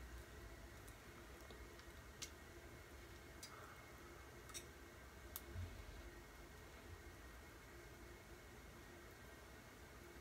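Near silence: room tone with a few faint, isolated clicks in the first half or so.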